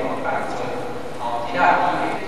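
Speech only: a speaker lecturing in Chinese, with short pauses between phrases.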